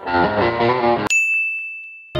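A brief musical snippet, then about a second in a single bright ding that rings on one high pitch and fades away: an editing sound effect marking on-screen text appearing.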